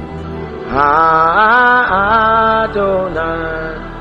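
A man singing a slow worship chorus into a microphone, drawing out long wavering notes over a steady low instrumental backing.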